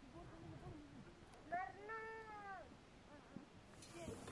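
An animal's high, drawn-out mewing cries that rise then fall in pitch: a faint lower one at the start and a louder one about a second and a half in.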